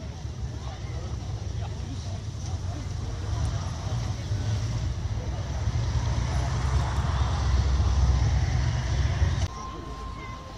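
Low rumbling noise that swells over several seconds and stops abruptly near the end, under the murmur of people talking.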